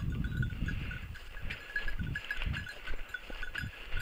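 A small bell on a hunting dog's collar jingles in short, irregular rings as the dog moves through the grass, over a low rumble.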